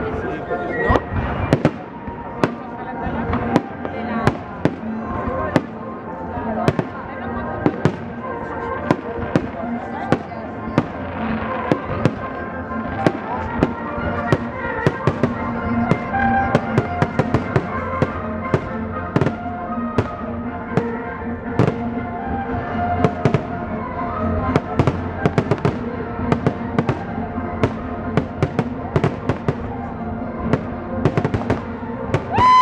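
Aerial firework shells bursting, many bangs in quick succession, over music accompanying the pyromusical display. The bursts come thicker and faster toward the end.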